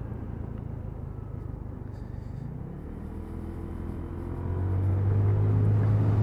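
Lexmoto Diablo 125cc motorbike engine running on the move, a low steady drone under road and wind noise. The pitch climbs and the sound grows louder through the second half as the bike accelerates.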